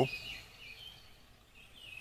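Faint bird chirps over quiet outdoor background noise.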